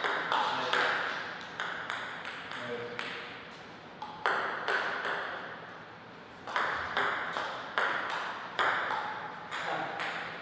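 A table tennis ball clicking back and forth off bats and the table in rallies, about two or three hits a second, each hit ringing briefly in the hall. The hits pause twice, and a fresh rally starts with a serve about six and a half seconds in.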